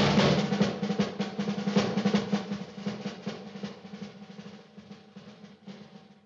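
Orchestral film music: as the melody ends, a fast drum roll continues over a steady low note and dies away gradually over about five seconds.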